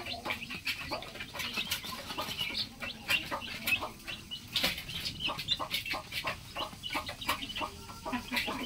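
A flock of young chicks pecking grain off a paper sheet: a busy, irregular patter of small taps mixed with soft high cheeps.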